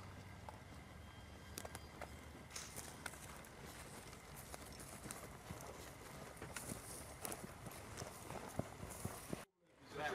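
Faint outdoor field ambience: a steady low hum under a light haze, with scattered sharp clicks and knocks and faint voices. It cuts out briefly near the end.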